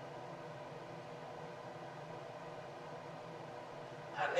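Faint steady hiss with a low hum: the room tone and recording noise floor during a pause in the talk, with no distinct sound.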